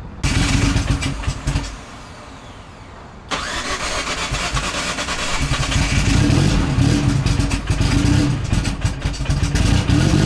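Turbocharged 4G63 four-cylinder drag car engine starting up and running, with a sudden loud burst just after the start that drops away, then the engine running again and growing louder in the second half, its pitch wavering slightly.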